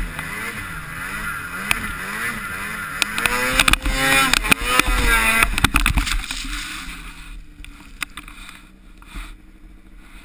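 Snowmobile engine revving up and down over and over, its pitch swooping about twice a second, with a clatter of sharp knocks as snow sprays over the helmet camera. About seven seconds in the engine sound falls away, leaving only faint knocks.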